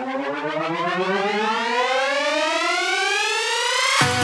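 A synthesizer riser in a psytrance track intro: a single bright tone rising steadily in pitch over about four seconds, building toward the point where the beat comes in.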